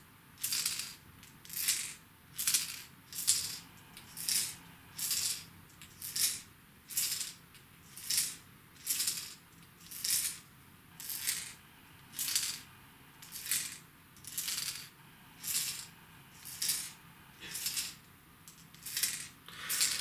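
Rattle chambers of two trolling wobblers, the German Tron replica and the original Salmo Freediver, shaken one after the other about once a second, each shake a short, sharp, high-pitched clatter of the loose balls inside. The comparison is of the lures' noise chambers, which may sound slightly different on the replica.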